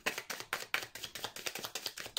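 A deck of tarot cards being shuffled by hand: a quick run of crisp card slaps, about five a second.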